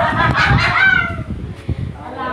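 A person's loud, shrill cry, pitched and falling, over rumbling handling noise from the phone being jostled, with a sharp knock near the end.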